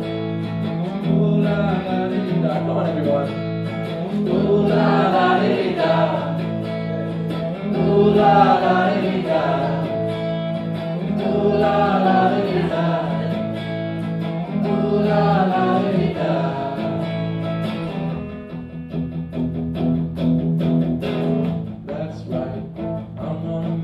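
A man singing live to his own electric guitar. The voice drops out about eighteen seconds in, leaving the guitar playing on.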